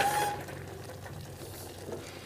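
Faint stirring of a thick rice-flour dough with a wooden spatula in a metal kadai, over a low steady hum.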